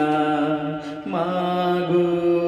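A young man's voice singing a Bengali Islamic song (gojol) through a microphone, holding long, steady notes. The first note ends about a second in and a new one begins at once.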